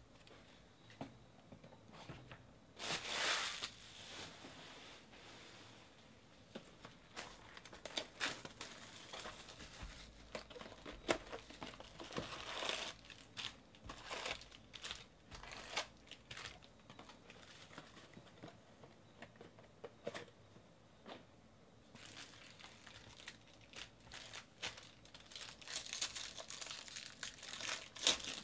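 Trading-card packaging handled by hand: a cardboard box being opened and foil card packs crinkling, in scattered rustles and tearing sounds, with the loudest tearing burst about three seconds in.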